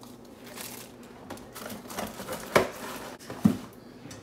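Food packaging rustling and crinkling as it is handled, with two sharp knocks about a second apart in the second half.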